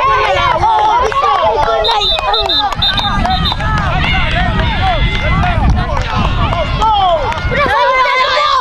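Several children shouting and yelling excitedly over one another, their high voices overlapping throughout, over a steady low rumble.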